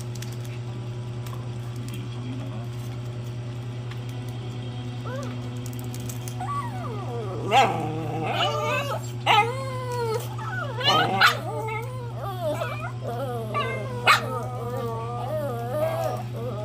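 A dog whining, starting about halfway through, in wavering, rising and falling pitches with several short sharp yips, while a morsel of food is held up in front of it. A steady low hum runs underneath.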